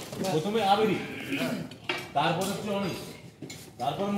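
People talking on a film set, with light clinking sounds among the voices.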